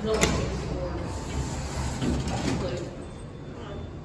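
A sharp click just after the start as an elevator's up-call button is pressed, followed by a steady low rumble.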